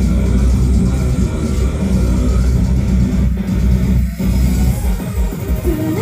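Loud rock music with guitar and bass in an instrumental passage with no singing, with a brief dip about four seconds in.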